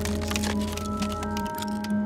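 A quick run of sharp, brittle cracks and clicks from the crystalline, glass-like creature's body as it moves, over sustained music.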